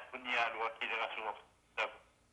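Speech coming over a telephone line, thin and tinny, for about the first second and a half, followed by a brief sharp sound and then quiet line hiss.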